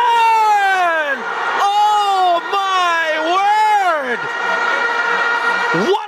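A commentator's long drawn-out shout celebrating a goal: four sustained high calls, each sliding down in pitch, with a quick rising call near the end.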